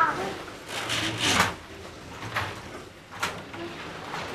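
Group of children bustling about with brooms and mops: scattered scrapes, rustles and knocks, loudest about a second in, with faint voices underneath.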